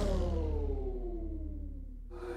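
The fading tail of a music sting: several tones slide slowly down in pitch over a low rumble and die away.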